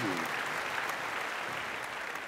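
Audience applauding: a steady spread of many hands clapping that slowly dies down.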